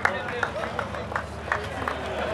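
Crowd voices talking, with a few scattered hand claps as applause dies away.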